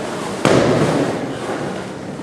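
A balloon bursting with one sharp bang about half a second in, echoing briefly in a large hall.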